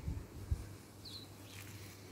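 A single short bird chirp about halfway through, over faint outdoor background, with a soft low thump shortly before it.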